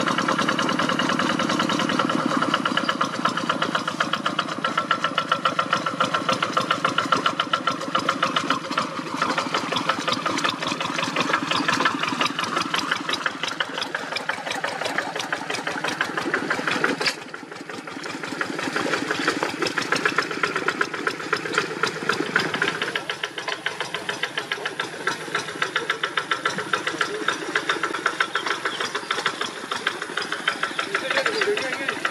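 Single-cylinder diesel engine of a two-wheel hand tractor running steadily as the machine works through wet, muddy soil, with a rapid, even firing beat. The sound dips briefly about halfway through.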